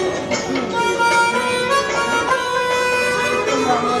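Harmonica (mouth organ) played into a microphone, a held, stepping melody line of a Hindi film song over accompanying recorded music.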